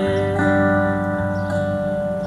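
Acoustic guitar strummed in a steady rhythm as folk-song accompaniment, with one long note held steady from about half a second in.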